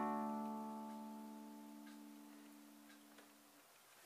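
Final chord of a song on an acoustic guitar ringing out and fading slowly, dying away near the end, with a few faint small clicks.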